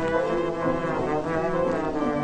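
Orchestral music with brass to the fore, playing held notes in chords that change pitch every half-second or so.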